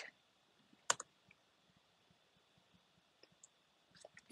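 A single computer mouse click about a second in, otherwise near silence.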